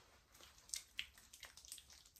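Faint wet squelches and soft smacks of hands rubbing face cleanser over the skin, a handful of short sounds spread across the moment.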